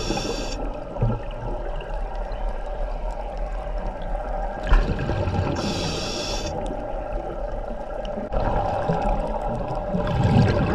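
Scuba regulator breathing underwater. A hissing inhalation of about a second comes roughly every five seconds, with the bubbling of exhaled air between breaths, over a faint steady hum.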